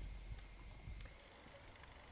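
Very quiet background: a faint low rumble under light hiss, with no distinct event.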